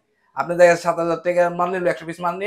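A man talking, starting after a brief pause at the very beginning.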